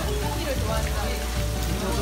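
Water splashing and bubbling from aerator hoses in tubs of live seafood, with voices and music in the background.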